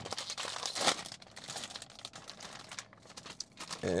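Plastic Fritos chip bag crinkling and crackling as it is pulled open. It is busiest in the first second, then thins to softer, scattered crinkles.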